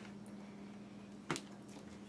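A faint steady low hum with a single short click about a second and a half in, as a plastic mixing bowl of cake mix is set down on a kitchen counter.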